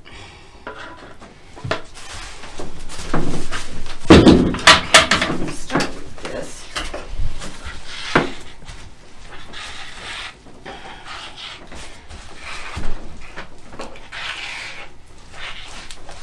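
A run of knocks and clatter about four to five seconds in, as tools and the plastic resin bucket are handled, then softer intermittent scraping of a notched plastic spreader pushing epoxy resin across the tabletop.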